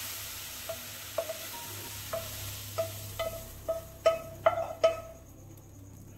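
A spatula knocks and scrapes fried onions and capsicum out of a non-stick pan, about a dozen taps that come faster towards the end, with the pan ringing on the same note at each knock. A faint sizzle from the hot pan fades away over the first couple of seconds.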